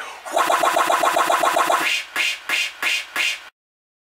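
A man's voice in a fast, stuttering repeat of about ten pulses a second, followed by a few slower separate pulses. It then cuts off abruptly to dead silence near the end.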